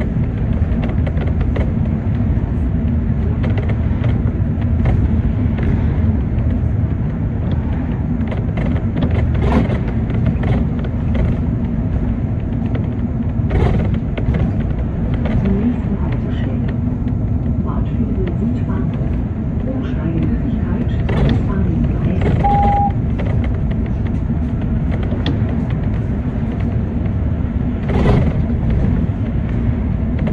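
City bus driving through town, heard from inside: a steady engine drone and road rumble with scattered rattles and knocks. A short high beep sounds about three-quarters of the way through.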